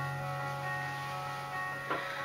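Quiet instrumental backing music: a low chord held steadily under several sustained higher notes, with a brief sharp sound just before the end.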